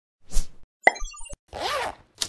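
Cartoon-style sound effects for an animated logo intro: a quick pop and a sharp click with short high blips and soft knocks, then a swish whose pitch bends up and back down.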